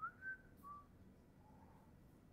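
A person idly whistling a few short notes, the last one lower and fainter.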